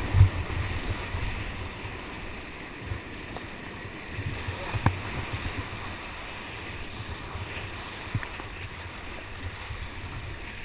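Rushing whitewater heard from inside a big rapid while running it in a kayak, with waves washing over the boat; loudest in the first second, then a steadier rush, broken by a few low thumps of water hitting the boat and camera, one about halfway through.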